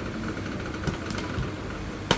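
Steady low mechanical hum of room noise, with a faint steady high tone running through most of it.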